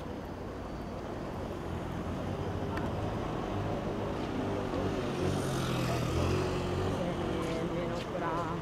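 A motor vehicle passing, growing louder to a peak about six seconds in.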